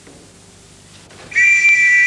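After a quiet first second, a hand whistle is blown once in a steady, high-pitched blast about a second long.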